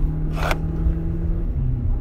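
Renault Captur's 1.3-litre turbo petrol engine and road noise heard from inside the moving car's cabin at cruising speed. It is a steady low rumble with an engine hum that steps down in pitch about one and a half seconds in.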